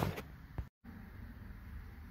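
The last of a man's words, then a brief total dropout where the audio is cut, followed by faint steady room noise with no distinct sound in it.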